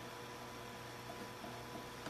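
Faint steady hiss with a low electrical hum: room tone, with no distinct sound events.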